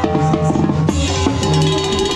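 Tarolas (chrome-shelled snare-type drums) played in quick strokes inside live band music, over a held bass line and sustained instrument tones.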